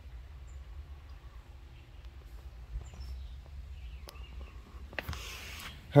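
Quiet background: a steady low rumble with a few faint bird chirps, a couple of light clicks, and a short rustle near the end.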